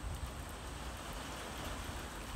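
Lawn sprinkler spraying, its water falling on the grass with a steady hiss over a low rumble.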